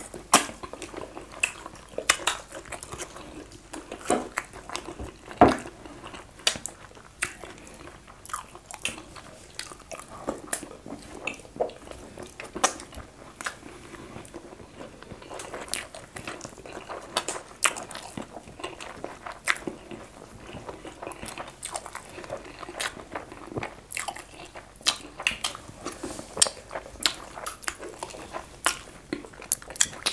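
Close-up eating sounds of two people eating fufu and okro stew with fish by hand: wet chewing, biting and mouth smacks as many short, irregular clicks, with the sharpest about half a second and five and a half seconds in.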